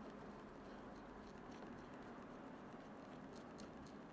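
Near silence: room tone with faint, scattered light clicks of a hand driver turning a small screw into an RC car's rear A-arm.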